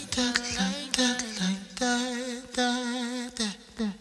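Soul music outro: a vocal line of held, wavering notes with little backing. It ends in a few short falling notes and fades out near the end.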